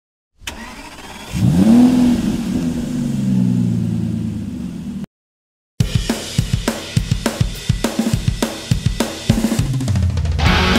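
A car engine starts, revs up quickly about a second in, then settles and slowly drops away before cutting off abruptly after about five seconds. After a short gap, a rock track's drum beat begins with evenly spaced hits.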